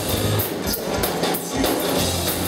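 Live band music from electric guitar, upright double bass and drum kit, with steady drum strokes and low bass notes.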